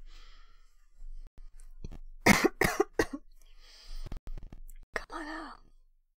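A woman coughing: two sharp coughs about two seconds in and a weaker third just after, then a breath and a brief throat sound near the end.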